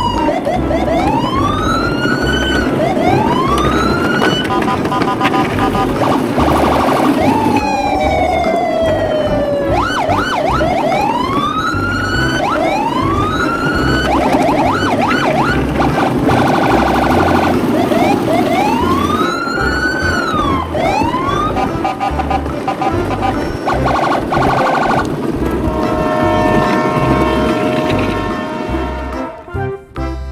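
Electronic siren-style sound effects: whooping tones that sweep up and fall back again and again, broken by bursts of fast warbling and one long falling sweep, over a steady background beat.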